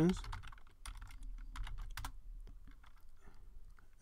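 Computer keyboard typing: scattered, irregular keystrokes as a terminal command is typed out.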